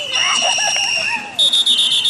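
Referee's whistle blowing to stop the play: a steady, high blast lasting about a second, with shouting under it, then a higher trilling blast that starts about a second and a half in.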